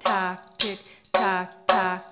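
Middle Eastern-style tambourine played with the hands, working through a practice rhythm of doom, tak and tik strokes. There are about four even strokes, roughly two a second, and the jingles ring and fade after each one.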